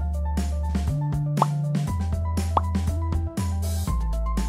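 Background music with a steady drum beat, a held bass line and short melodic notes, with a few quick upward-sliding blips.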